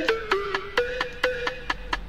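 Hip-hop beat playing without vocals: crisp percussion ticks about four a second over steady held synth notes.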